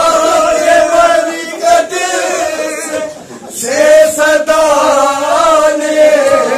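Male voices chanting a noha, a Shia mourning lament, in long drawn-out lines, with a short break about three seconds in before the chant resumes.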